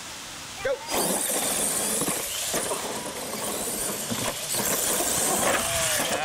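Two radio-controlled monster trucks launching from a standing start and racing flat out across dirt. Their motors and tyres start suddenly about a second in, and the noise stays loud and steady.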